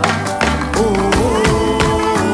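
Live band music: electric guitars over bass and drums, with a steady beat of percussive hits and held notes.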